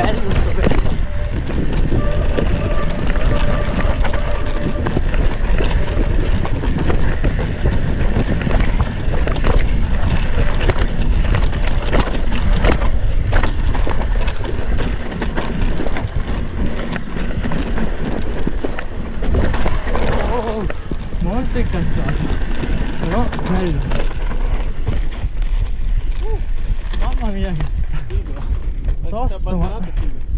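Cross-country mountain bike riding fast down a dirt downhill trail, heard from a camera on the rider: a steady rush of wind on the microphone with tyre noise and the rattle of the bike over bumps and roots. The rush eases near the end as the bike slows.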